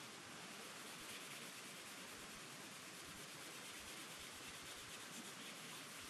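Faint, steady rubbing of a cotton pad buffing a worn silver-plated piece after it has been treated with silver plating liquid.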